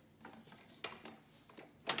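A few short knocks and clatters of kitchenware being handled on a counter, the last and loudest near the end.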